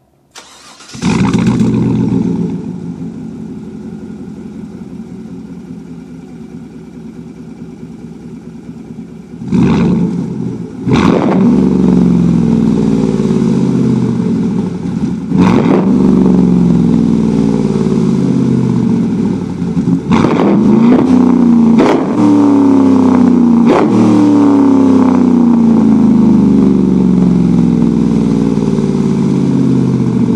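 A 2014 Chevy Silverado's engine cranks and starts about a second in, running through a 3-inch cat-back straight-pipe exhaust with a Y-tip to dual 5-inch outlets. It settles to a steady idle, then from about ten seconds in it is revved again and again, each rev falling back in pitch.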